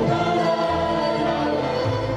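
Live Hungarian folk band music: a fiddle bowing a melody together with singing voices, over a double bass that changes note twice.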